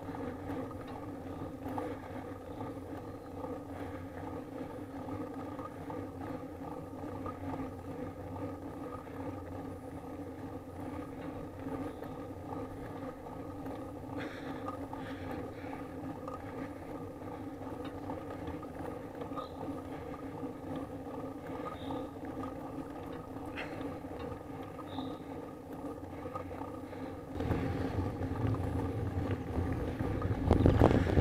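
Steady road noise from a bicycle riding up an asphalt mountain road, heard as a constant, even hum. About 27 seconds in, it gives way to louder wind buffeting the microphone.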